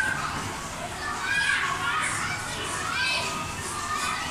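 Young children's high voices chattering and calling out as they play.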